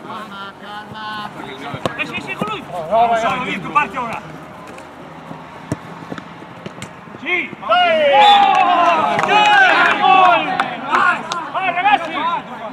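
Footballers shouting on the pitch, with a single sharp knock midway. About three-quarters of the way through, several men break into loud, overlapping yelling, the sound of players celebrating a goal.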